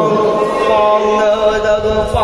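Chant-like ritual singing in long, held notes that bend slowly from one pitch to the next, in the manner of a Meitei Lai Haraoba song.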